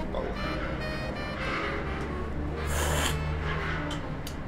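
Coffee slurped hard off cupping spoons: a softer slurp about a second and a half in, then a louder hissing slurp near the three-second mark. A brief pitched tone sounds near the start.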